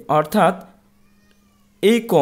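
Short voiced sounds whose pitch slides down and back up, one group in the first half-second and another starting near the end, over a faint steady hum.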